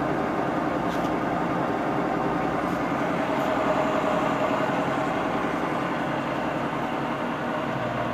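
Tree CNC knee mill running a program, its drive motors and belt drives humming steadily as the table feeds along the X axis.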